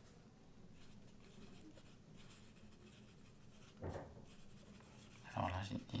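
Black felt-tip pen scratching faintly on paper as handwritten dialogue is lettered into a comic panel, with one short, louder low sound about four seconds in. A man's voice begins near the end.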